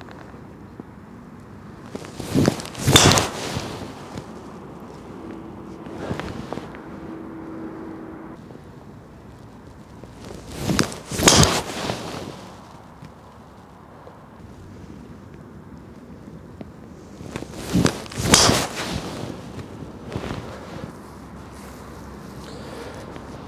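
Three golf drives hit with a Callaway Epic Max driver, about eight seconds apart. Each is a sharp crack of the club face on the ball, followed about half a second later by a second impact.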